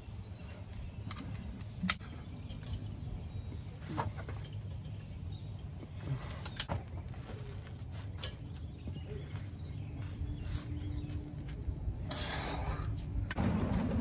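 Ratchet and 17 mm socket working on a car's oil drain plug that won't break loose: a few sharp metal clicks and clinks, the loudest a little under two seconds in, and a longer scraping burst near the end.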